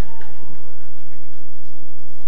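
Steady low electrical hum from a PA sound system.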